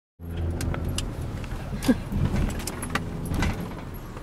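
Cabin noise inside a moving Honda car: a steady low engine and road rumble, with scattered small clicks and rattles and one sharp knock about two seconds in.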